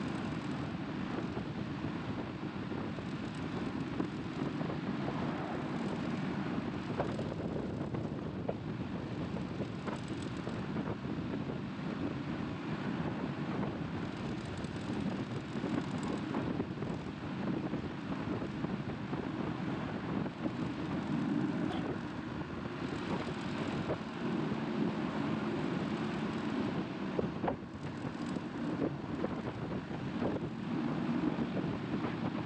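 Caterpillar 535D skidder's diesel engine running steadily at road speed, with tyre noise on pavement and wind buffeting the microphone.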